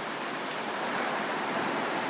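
Heavy thunderstorm rain falling hard, a steady even hiss.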